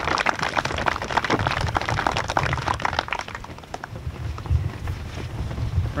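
Audience applauding, the clapping thinning out and dying away about three to four seconds in.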